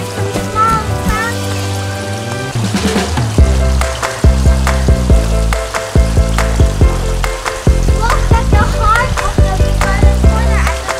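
Upbeat guitar background music, with a fuller, steady beat coming in about three and a half seconds in, over a steady hiss.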